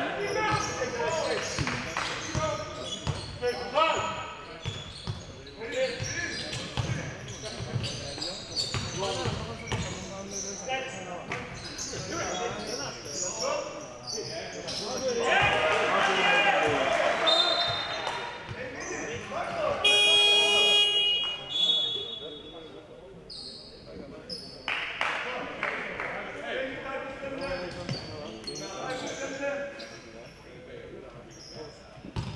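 A basketball being dribbled on a hardwood court in a large echoing sports hall, with players and benches shouting. About twenty seconds in, a loud electronic buzzer sounds for about a second.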